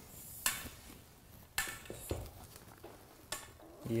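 Metal frame poles of a collapsible reflector panel clinking and scraping, and the reflector fabric rustling, as a pole is fed through the fabric's sleeve: a few short, separate clatters and rustles.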